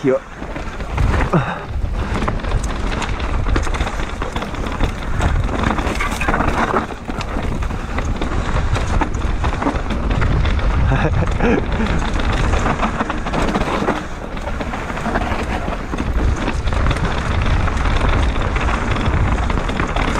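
Mountain bike ridden down a dry dirt singletrack: knobby tyres rolling and scrabbling over dirt, the bike clattering over bumps, with wind rumbling on the camera's microphone.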